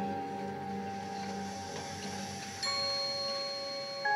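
A marching band's front ensemble plays a soft passage of sustained, ringing mallet-percussion and bell tones. About two-thirds of the way through, a new chord is struck and rings on.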